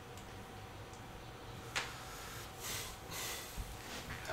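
A single sharp click of a computer mouse about two seconds in, then soft breathing through the nose for about a second, over faint room tone.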